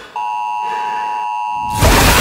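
A steady electronic beep tone, several pitches sounding together, held evenly for about a second and a half and then cut off abruptly.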